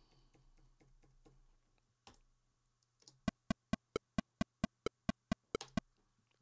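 A computer keyboard key is tapped rapidly and evenly to tap in a tempo: about a dozen sharp clicks, a little over four a second, starting about halfway through. A few faint ticks come before them.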